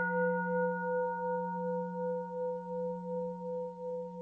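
A struck bell-like metallic tone ringing on after its strike, with a slow wavering pulse in its loudness and a gradual fade; its highest overtone dies away near the end.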